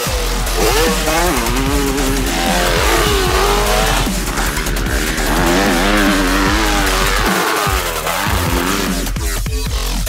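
Motocross dirt bike engine revving, its pitch rising and falling again and again as the throttle is worked.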